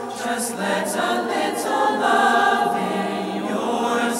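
Mixed choir of young men and women singing a cappella: sustained chords of many voices with crisp sung "s" consonants, in a large stone church whose echo carries the sound.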